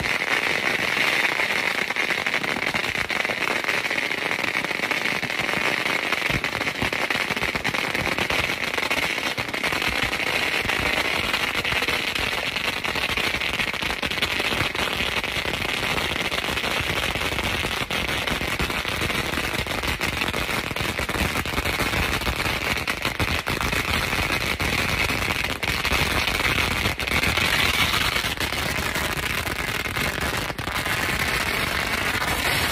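Fireworks and firecrackers going off without a break: a dense, loud crackling and popping with many sharp cracks.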